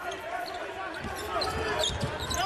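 A basketball being dribbled on a hardwood court, with faint voices of players calling out.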